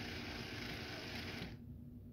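Small DC gear motors of a wheeled robot chassis driving its wheels, a faint steady whir that stops suddenly about one and a half seconds in.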